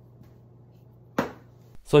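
A steady low hum with a few faint ticks, then a single sharp knock a little after a second in. The hum cuts off just before the end.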